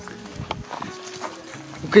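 Footsteps crunching and scuffing over rocky, partly snow-covered ground, with faint steady background music underneath. A voice starts just before the end.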